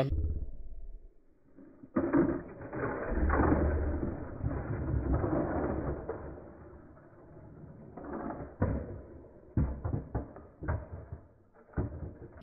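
Slowed-down, deepened sound of die-cast toy cars running along plastic track in slow motion: a long rumble a couple of seconds in, then a few scattered clacks near the end.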